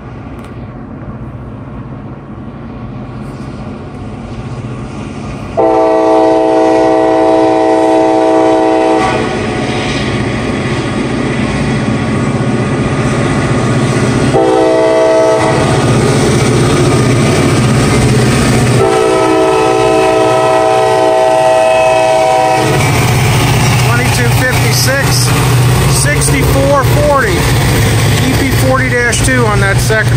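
Diesel freight locomotive horn sounding for a grade crossing: a long blast, a short one and another long blast. Then the locomotives pass close by with a loud, deep diesel engine drone, working hard under a heavy train, and wheels squealing on the rails near the end.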